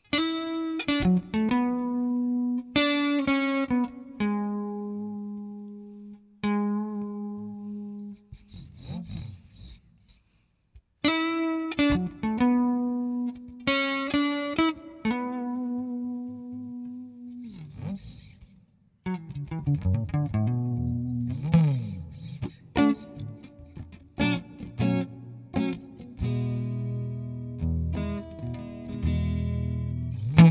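Recorded blues song on electric guitar: a solo guitar intro of single ringing notes and chords that die away, a brief pause, then more guitar phrases. About two-thirds of the way through, a full band with bass and drums comes in under the guitar.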